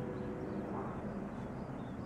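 Quiet, steady background noise with a faint hum and no distinct sound events.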